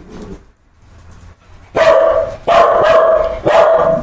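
Dog barking three times in quick succession, long, loud barks starting a little under two seconds in.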